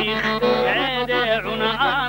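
A man singing a Dagestani folk song in a wavering, ornamented voice that bends and trills between notes, over a steady low drone from the accompaniment.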